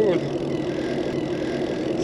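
Bicycle rolling along a paved trail: steady tyre and riding noise with a constant low hum.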